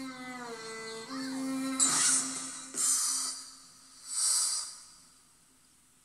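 Television drama score played through a TV's speaker: held, sustained notes that step down in pitch, followed by a few short hissing swells, then fading out near the end.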